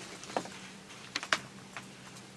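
A few light, sharp clicks and taps, about four spread unevenly over two seconds, over a faint steady room hum.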